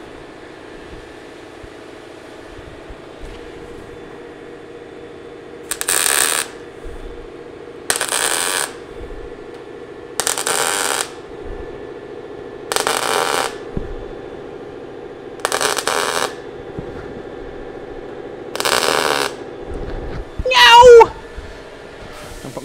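MIG welder laying six short tack welds, each a burst of under a second, two to three seconds apart, on the seam of a sheet-steel rear window frame set into a car roof, over a steady hum. The welds are kept short and spaced out so the roof does not warp. A brief voice near the end is the loudest sound.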